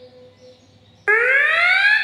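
Electronic alarm sound from a smoke-detection program, played through a computer's speakers: a loud rising whoop that starts suddenly about halfway in, the alert signalling that smoke has been detected.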